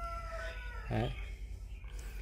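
Faint rooster crowing: one long held call that trails off about half a second in.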